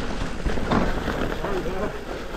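Mountain bike rolling fast down a dirt trail: steady tyre and rattle noise with a thump a little under halfway, and a brief voice sound near the end.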